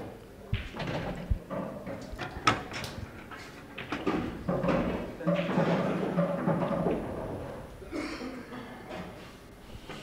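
Faint, indistinct voices in a quiet hall, with a few sharp knocks in the first few seconds.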